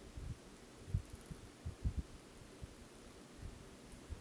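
Faint, irregular low thuds and bumps from hands working at a fly-tying vise while dubbed thread is wrapped onto the hook.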